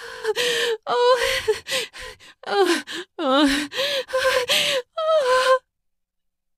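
A woman moaning and gasping, about eight short moans held on a high, mostly level pitch, voiced as the moaning of an orgy scene. The moans stop shortly before the end.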